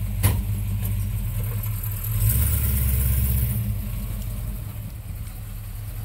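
1970 Dodge Coronet's 383 V8 idling, with a single sharp knock just after the start. About two seconds in, the engine note deepens and swells for a second and a half as the car pulls away, then eases off.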